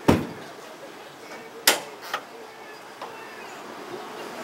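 An old car's hood latch being released and the steel hood swung open: a sharp clunk at the start, a second sharp clunk a little before the middle, and a lighter click just after.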